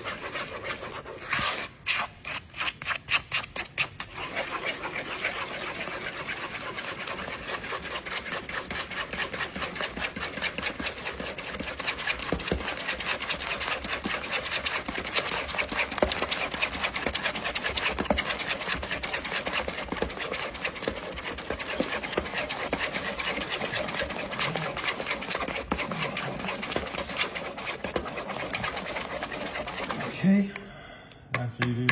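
Cake batter being stirred quickly by hand with a spatula in a plastic mixing bowl: rapid, steady scraping and slapping, many strokes a second, with a few short breaks between two and four seconds in.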